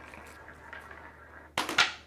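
A steel ball rolling faintly down a clear acrylic rail, then two sharp clacks close together about a second and a half in. The clacks are the ball being pulled into a small spherical magnet and striking the row of steel balls, which fires the far ball off the end of the magnetic rail.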